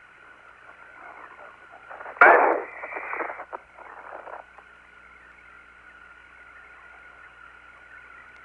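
Apollo air-to-ground radio link, open with no one talking: a steady static hiss carrying a faint steady whistle. A louder, garbled burst of transmission comes about two seconds in and lasts about a second.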